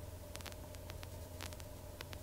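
Faint steady low hum and hiss with scattered faint clicks: the Robinson R22 helicopter's intercom audio feed in flight between transmissions.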